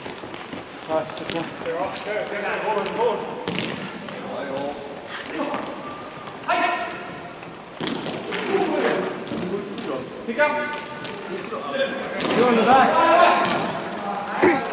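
Broomball players calling and shouting to each other across the ice, with louder calls in the second half, and occasional sharp knocks of broomball sticks striking the ball.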